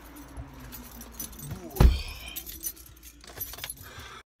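Someone getting into a car: rustling and small clicks as he settles into the seat, a heavy thump of the car door shutting just under two seconds in, then keys jangling.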